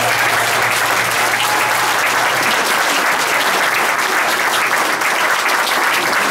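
Audience applauding at the end of a live acoustic song, loud and steady, with a low lingering tone from the stage dying away about two and a half seconds in.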